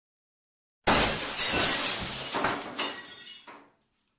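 A sudden loud crash about a second in, with pieces clattering and scattering as it dies away over about three seconds.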